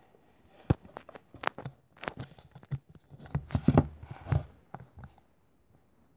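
Handling noise from a tablet close to its microphone: irregular taps, knocks and rubbing, loudest in a cluster around the middle.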